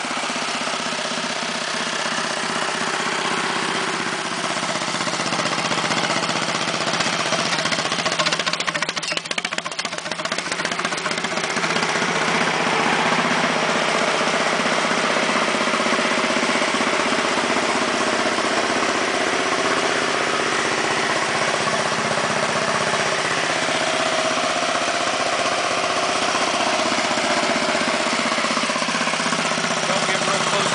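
Small single garden-tractor engine of a homemade mini Oliver tractor (converted Wheel Horse) idling steadily, with a brief unsteady patch about a third of the way through.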